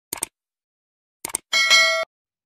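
Animated subscribe-button sound effects: two short mouse clicks, then about a second and a half in a bright bell ding that rings for half a second and cuts off.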